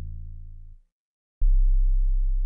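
Trap 808 bass one-shot samples previewed one at a time: the tail of one 808 note fades and cuts off, then after a short gap another 808 starts with a click and holds a deep, steady bass tone.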